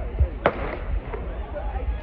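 A starter's pistol fired once, about half a second in, a sharp crack with a short echo trailing after it, over the chatter of a crowd.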